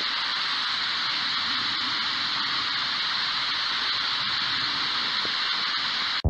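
Steady hiss of static from a ghost radio, even in level, with no voice fragments breaking through.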